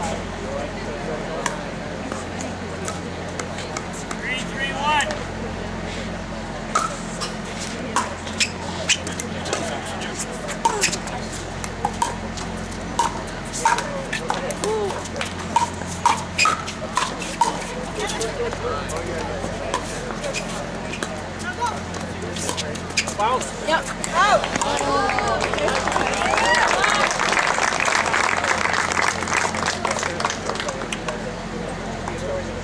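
Pickleball rally: paddles striking a hard plastic pickleball, sharp pops at irregular intervals for about fifteen seconds, with a burst of quick exchanges in the middle. Near the end the hits stop and voices rise.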